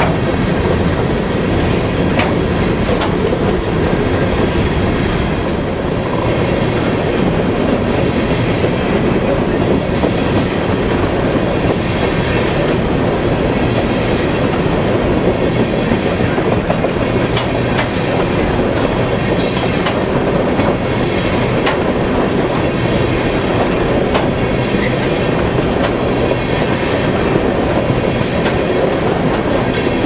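Freight train cars rolling past at close range: a loud, steady rumble of steel wheels on rail, with scattered clicks and clatter as the wheels cross rail joints.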